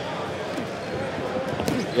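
Indoor arena crowd murmuring, with a few short thuds from the boxing ring, the boxers' footwork on the canvas or gloves landing.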